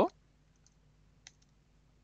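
A single computer mouse click a little over a second in, with a couple of fainter clicks around it, over near silence.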